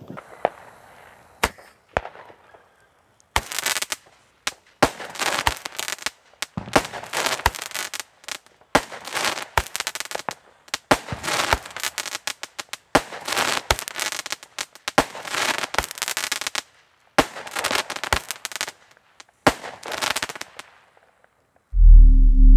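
Xplode 'Rap' category F2 firework battery firing: a few single pops at first, then from a few seconds in a long, fast run of shots breaking into clusters of sharp cracks. The firing stops about two seconds before the end.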